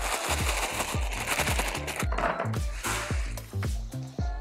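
Background music with a steady bass beat, over the rustle and rattle of a plastic bag of Lechuza Pon mineral granules being handled.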